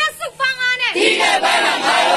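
Protesters shouting a slogan: a single strained voice leads, and a crowd of voices shouts back together from about a second in.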